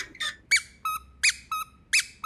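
A puppy chewing a rubber squeaky toy, which squeaks over and over. The squeaks come in pairs, a higher one that rises and falls followed by a lower steady one, three times in a steady rhythm.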